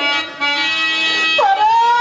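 A drawn-out sung note in Telugu padyam (verse-drama) style, held steady, then swooping down in pitch about halfway through and held again.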